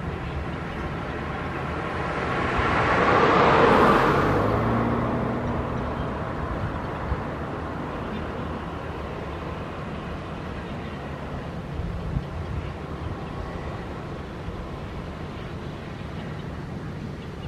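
A road vehicle passing: its sound swells for about two seconds, is loudest about four seconds in, then fades away, over a steady low background hum.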